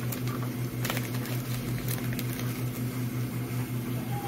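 Hands handling stencil transfer paper in a thermal tattoo stencil printer, with a few light clicks and paper sounds, over a steady, evenly pulsing low hum.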